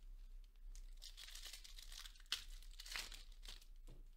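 Foil wrapper of a trading-card pack being torn open and crinkled, faint rustling from about a second in, with a sharp tick a little past halfway and a few more short crinkles.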